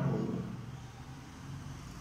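A man's voice trailing off in the first half second, then a low steady hum under quiet room tone.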